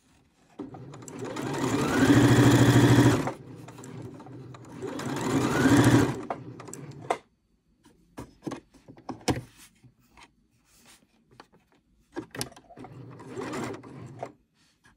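Necchi 102D sewing machine stitching in two runs of a few seconds each, the motor speeding up at the start of each run. Scattered clicks follow, then a shorter, quieter run of stitching near the end.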